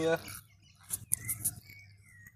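A bird chirping: a few short, high calls about a second in, and a softer one near the end.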